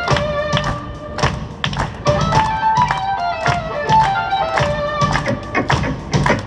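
Live instrumental rock: a 3Dvarius electric violin playing a melody of long held notes over a rhythmic backing with a steady beat, about two strokes a second.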